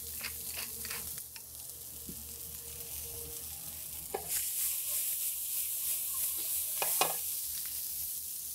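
Sweet corn kernels and bacon lardons sizzling in a hot sauté pan over a gas flame, the sizzle louder from about halfway through, with a few light knocks.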